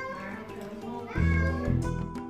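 A domestic cat meowing twice, each call rising in pitch, the first at the start and the second about a second in, over background music.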